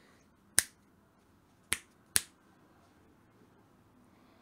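Three sharp clicks: one about half a second in, then two more about a second later, half a second apart.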